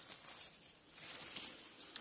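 Faint rustling and crackling of dry fallen leaves being disturbed close to the microphone, quietest in the middle.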